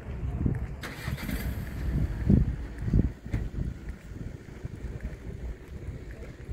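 Low rumble of street traffic, swelling louder twice around the middle, with a brief hiss near the start and a single click.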